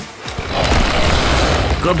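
Cartoon sound effect of a race car speeding past: a rushing whoosh over a low rumble. It starts about half a second in and runs until a voice cuts in near the end.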